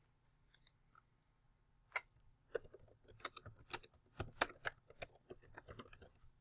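Typing on a computer keyboard: a few scattered key clicks in the first two seconds, then a fast run of keystrokes to the end.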